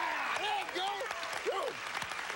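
Studio audience and contestants applauding, with men cheering and whooping over the clapping.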